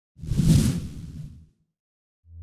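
A logo-intro whoosh sound effect: one short rush of noise with a deep low end and a hiss on top. It swells in quickly, is loudest about half a second in and fades away by a second and a half.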